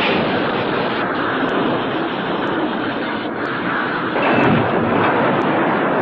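Film sound effects of a cabover semi truck crashing through a large metal sign and wrecking: a loud, continuous roar of blast and tumbling debris that shifts in texture a few times.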